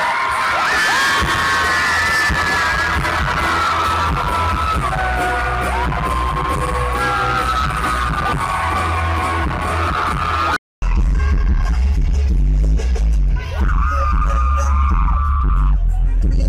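Live pop concert music over a stadium sound system, heard from the crowd: singing over loud music with heavy bass. It cuts off abruptly about ten and a half seconds in and picks up at once on another passage of the show.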